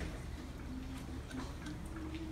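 Hall ambience with a steady low hum and scattered small clicks and knocks from people shifting music stands and moving into place, with faint voices in the background.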